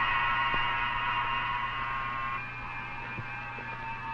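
Steady electronic drone of several high held tones over a low hum, dropping a little in level and changing tone about halfway through.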